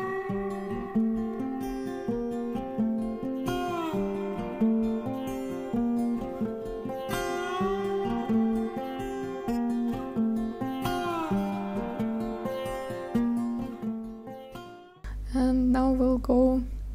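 Background music with plucked guitar playing a repeating pattern of notes; it stops abruptly about a second before the end.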